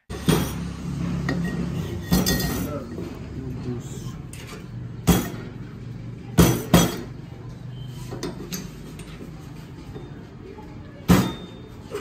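Sharp metallic clinks of steel telescopic-fork parts knocking together as the damper cylinder and inner fork tube are handled and fitted by hand. There are about six separate clinks, over a steady low background hum.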